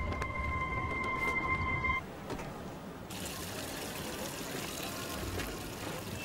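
A sustained high tone over a low rumble cuts off about two seconds in, leaving quiet ambience. About three seconds in, a soft, steady hiss of water running from an outdoor tap into a wash trough comes up.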